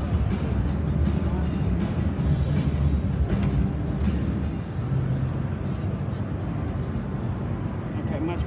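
Busy exhibition-hall ambience: background music mixed with indistinct crowd chatter, steady and fairly loud with a heavy low end.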